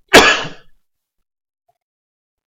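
A man's single loud, short cough just after the start.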